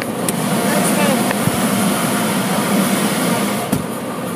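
Steady rushing noise of automatic car wash equipment heard from inside the car, with indistinct voices mixed in.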